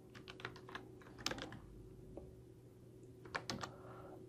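Faint clicks of a computer keyboard and mouse: a handful of light taps in the first second, a sharper click at about a second and a half in, and a few more near the end.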